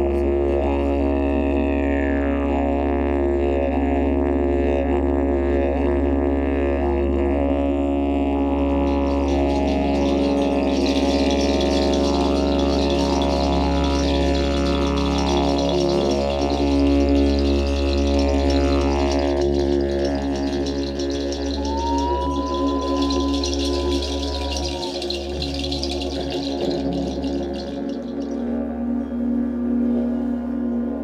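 Didgeridoo drone: a steady low tone with shifting overtones and several sliding vocalised calls over it. About a third of the way in, a large gong joins with a shimmering high wash under the drone.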